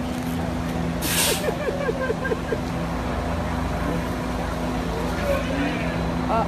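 A city bus's air brakes let out a short hiss about a second in, over the idling bus's steady low hum.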